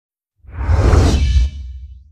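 Whoosh sound effect with a deep bass rumble for a TV channel's logo ident. It swells in about half a second in, is loudest for about a second, then fades with a faint ringing tail near the end.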